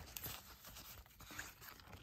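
Faint rustling of clear plastic sleeve pages being flipped in a ring-binder planner.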